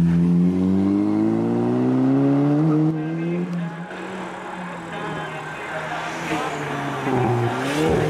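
Škoda Octavia RS engine pulling hard out of a hairpin, its note rising steadily for about three seconds, then fading quickly as the car climbs away. Near the end a second car's engine approaches and swells, its pitch dipping and rising as it works through the corner.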